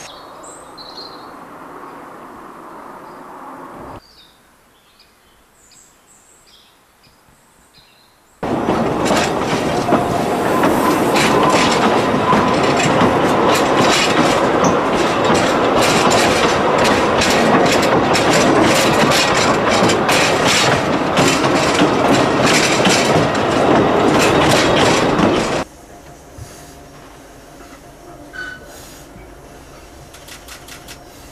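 Narrow-gauge railway carriages running along the track, heard from on board: a loud, steady rush packed with rapid clicking of wheels on the rails. It starts suddenly about eight seconds in and cuts off suddenly a few seconds before the end. Quieter sound lies either side of it.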